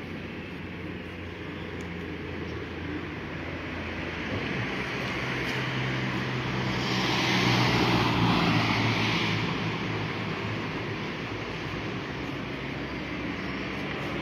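A small panel van drives past close by: its engine and tyre noise build over several seconds, are loudest about eight seconds in, then fade away, over a steady low hum of traffic.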